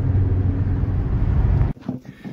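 Steady low road and engine rumble inside a moving car's cabin, cutting off abruptly near the end.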